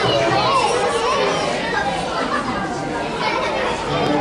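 Many children's voices chattering and talking over one another at a steady level.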